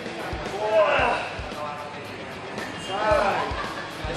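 A man's voice sounds twice during overhead weight-training reps, about a second in and again about three seconds in, as reps are being counted out. Under it runs a regular low thump about twice a second.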